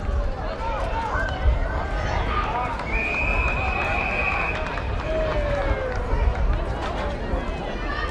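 Footballers shouting calls to one another across an Australian rules football ground, with one steady umpire's whistle blast lasting about a second and a half, about three seconds in.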